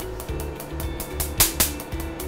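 Lumenis M22 Q-switched Nd:YAG laser firing on facial skin at about five pulses a second, each pulse a sharp snap as the laser energy hits the melanin in pigmented spots. Background music with a bass line runs underneath.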